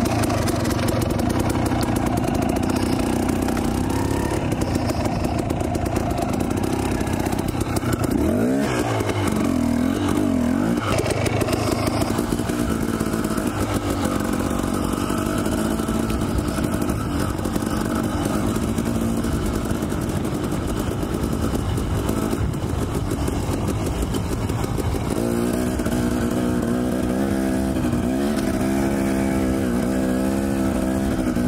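Husqvarna dirt bike engine pulling along a trail, its pitch rising and falling with the throttle. The revs swing up and down about eight to eleven seconds in and again near the end.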